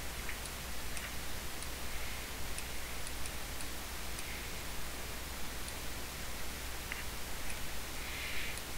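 Steady microphone hiss and low hum, with a few faint, scattered clicks of a computer mouse.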